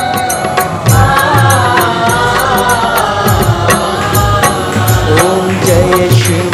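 Devotional Hindi song to Shiva: a sung melody over drums and bass with a steady beat.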